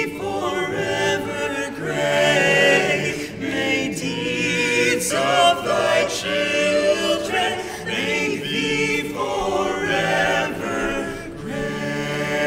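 Male a cappella group singing an alma mater hymn in close harmony, in long held chords that change every second or two.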